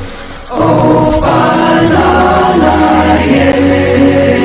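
Choral music: many voices holding long, chant-like notes over a steady low drone. It dips briefly at the start and swells back in about half a second in.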